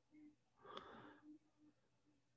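Near silence on an online call that keeps breaking up, with one faint breath-like sound about a second in.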